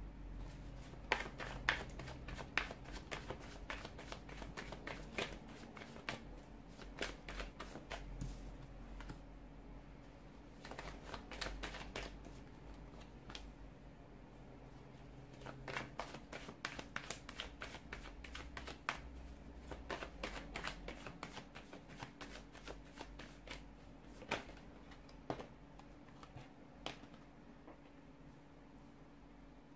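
A deck of tarot cards being shuffled and dealt by hand: quick runs of light card clicks and slaps, broken by short pauses, over a faint low hum.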